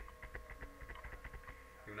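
Steady electrical hum with a thin high whine, and rapid faint clicks and crackle in the recording for about the first second and a half.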